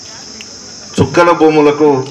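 A steady high-pitched hiss, insect-like, fills a pause in the talk; a man's voice starts speaking about a second in, over the same hiss.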